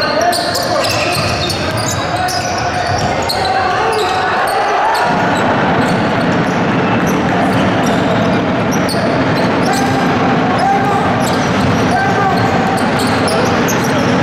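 Live sound of an indoor basketball game: a basketball bouncing on a hardwood court with short sharp strokes scattered throughout, over the shouts and chatter of players and spectators in the gym.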